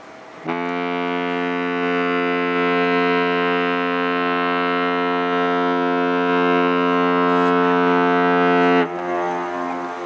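A ship's horn sounds one long, steady blast of about eight seconds, starting about half a second in. When it cuts off, a fainter horn tone carries on for about two seconds.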